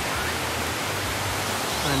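A steady rushing hiss of outdoor background noise with a low rumble beneath it, and a voice starting right at the end.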